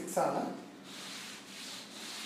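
A cloth wiping chalk writing off a chalkboard: a steady scrubbing hiss that starts about a second in, after a brief vocal sound at the start.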